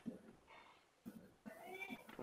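Faint, indistinct speech: a voice murmuring in short broken syllables, with one drawn-out wavering sound near the end.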